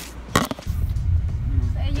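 Low, steady road rumble inside a moving car's cabin. It starts just after a sharp click about half a second in.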